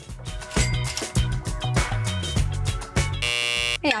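Background music with a steady beat, then a half-second buzzer about three seconds in: the game-show buzzer for a wrong answer.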